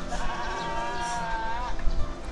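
A farm animal bleating once, a long wavering call lasting about a second and a half.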